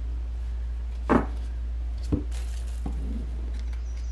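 Round cardboard oracle cards being handled and laid down on a table, giving three light taps about a second apart over a steady low hum.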